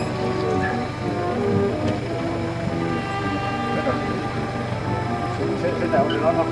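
Background music with held notes at several pitches over a steady low hum, with indistinct voices underneath.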